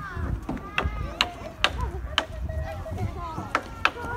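Playground spring riders rocking back and forth, giving about six sharp, irregularly spaced clicks and knocks.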